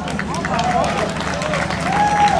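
Audience applauding a band at the start of a live set: many hands clapping, with cheering voices over the clapping and a low steady hum beneath.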